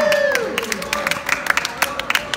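Small audience clapping and cheering, with voices calling out over the first claps; the claps then go on as separate, scattered hand claps.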